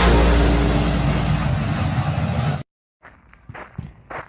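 The tail of an intro animation's sound effect: a loud, sustained rushing noise over a steady low hum, easing off slightly and then cut off abruptly about two and a half seconds in. A moment of silence follows, then faint outdoor background.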